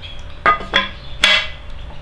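A few light knocks and clicks, three in all, as a metal drill jig is seated into the back of a propeller hub and handled against it.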